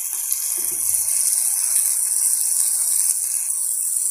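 Tomato-onion masala frying in oil in a metal kadai, giving a steady, even, high-pitched sizzle.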